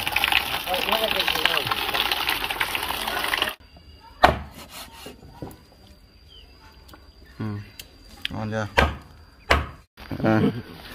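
Water pouring and splashing into a plastic basin while a bamboo shoot is rinsed, cutting off abruptly after about three and a half seconds. Then a few sharp cleaver chops on a wooden chopping block through duck meat, with brief voices in between.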